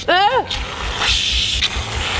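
A brief high cry with a rising and falling pitch, then a steady hiss as an aerosol whipped-cream can sprays cream into a mouth.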